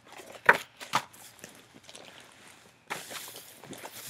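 Two sharp clicks of items being handled, about half a second and a second in, then crinkling and rustling of purple metallic tinsel from about three seconds in as it is pulled out of a bag.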